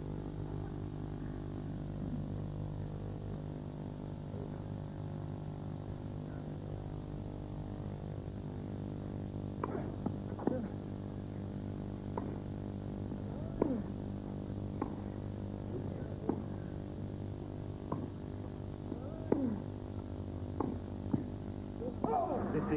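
Tennis racquets hitting the ball in a baseline rally: short sharp pocks about every second, beginning about ten seconds in. Under them runs a steady low hum made of several tones.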